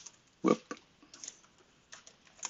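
Computer keyboard typing: a handful of separate keystrokes. About half a second in there is one louder, deeper short thump.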